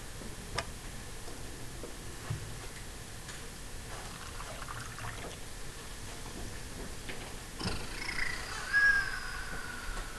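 Quiet room tone with a few faint clicks, then from near the end a drawn-out high squeak that falls slightly in pitch and is the loudest sound.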